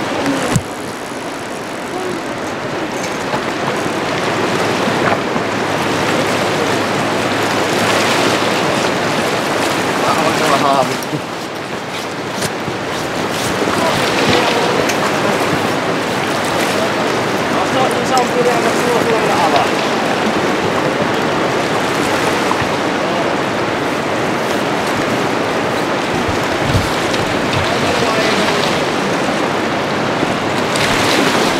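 Steady rush of fast-flowing river rapids, with a few faint voices in the background.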